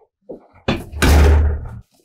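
An interior door being pushed shut, ending in a loud thud with a deep low end about a second in.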